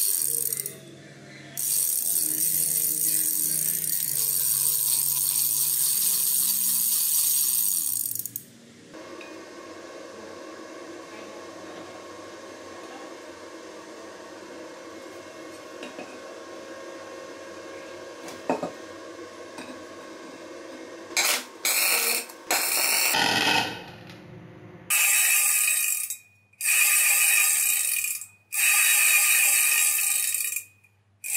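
Freewheel sprocket spun by hand, its ratchet pawls clicking in a fast buzz. There is a long run at the start, then several separate spins of a second or two each in the last third.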